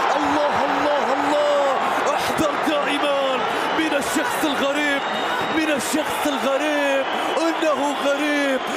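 An Arabic football commentator's voice in excited, drawn-out repeated cries celebrating a goal, over stadium crowd noise.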